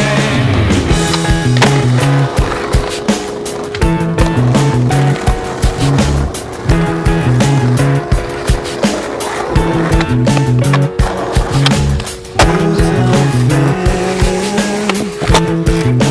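Rock music with a bass line and drums, with skateboard sounds mixed in: wheels rolling on pavement and the sharp clacks of tail pops and landings.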